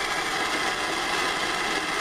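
Hand-held MAP gas torch burning with a steady hiss.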